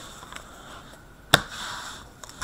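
A single sharp tap of trading cards being set down, about one and a half seconds in, then a faint shuffle of the cards.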